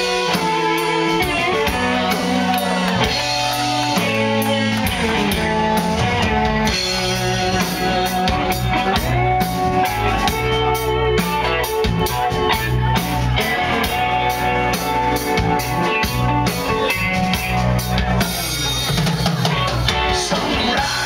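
Live rock band playing an instrumental passage: electric guitars over a drum kit keeping a steady beat.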